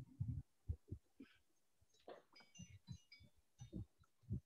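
Near-quiet pause on a video call, broken by faint, irregular low thuds and a few brief muffled sounds.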